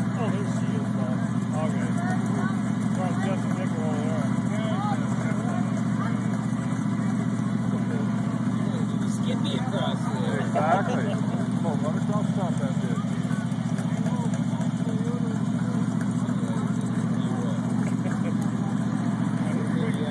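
Off-road mud-bog rig's engine idling steadily while the rig sits stuck in the mud pit. Crowd voices chatter over it, with one louder call about halfway through.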